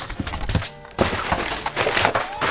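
A cardboard shipping box being opened: knocks and scrapes of the cardboard flaps, then, from about a second in, a rustle of crumpled newspaper packing being handled in the styrofoam liner.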